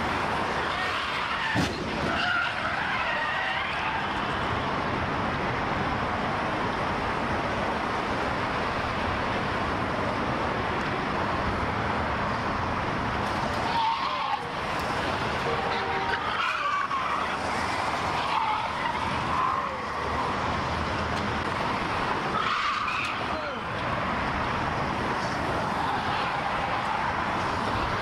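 Steady rush of freeway traffic passing at speed, with several short wavering high-pitched sounds breaking through at intervals.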